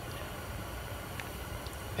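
Steady low room hum, with two faint light clicks about a second in and near the end as a silicone mold and its cast plastic pieces are handled.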